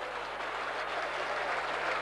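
Stadium crowd applauding and cheering in a steady wash of noise that builds slightly, the crowd's reaction to a try just scored.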